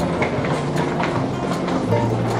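Rhythmic clicking on a hard tiled floor, about three clicks a second, over soft background music with held notes.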